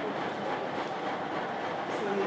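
Steady room noise: an even hiss with no clear rhythm, beat or distinct strikes.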